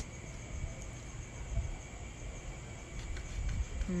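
Low, uneven rumble of wind on the phone's microphone, with faint insects chirring steadily in the background of a night outdoors.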